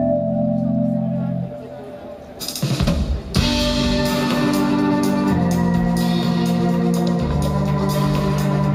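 Live electronic indie-pop band playing an instrumental intro with sustained organ-like synth chords. The chords drop away briefly about one and a half seconds in and swell back, and a steady beat with hi-hat-like strokes enters about three and a half seconds in under the full chords.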